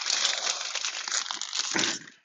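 Plastic trading-card pack wrappers crinkling and tearing as packs are opened by hand. The crackle is dense and steady, grows louder just before the end, then stops.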